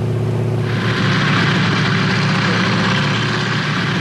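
Tank and military vehicle engines running steadily with a low hum, joined about half a second in by a steady rushing noise.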